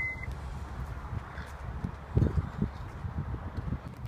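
A short electronic beep from the power tailgate of a Lexus NX 300h, the warning as its automatic close button is pressed, followed by low rumble on the microphone and two dull thumps about two seconds in.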